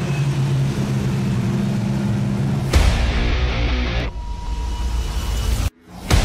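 Several production sedan race car engines running steadily on a dirt speedway. After about two and a half seconds they cut off abruptly and loud theme music with heavy bass takes over. The music drops out briefly just before the end.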